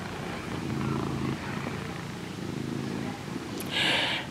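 Tabby cat purring close to the microphone, the purr swelling and fading with each breath. A short breathy noise comes near the end.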